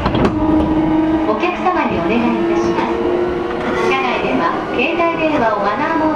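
Inside an E233-series electric train car in motion: a steady running rumble with held tones from the traction equipment, under a recorded onboard announcement that leads straight into the English part ("This is a Chuo Line Rapid Service train for Tokyo") near the end.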